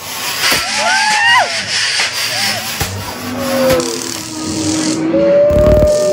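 Voices giving short high-pitched shrieks over a steady scraping hiss, then a long drawn-out wail, with a dull low thump just before the end.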